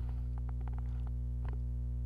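Steady electrical mains hum on the microphone, with a scatter of faint light clicks about half a second to a second in and again near the middle.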